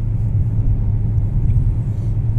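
Steady low rumble of a moving car, heard from inside its cabin.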